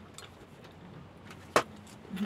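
Small clicks of chopsticks against dishes during a meal, with one sharp click about one and a half seconds in.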